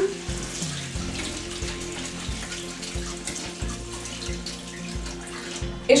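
Kitchen tap running steadily while lentils are rinsed under it.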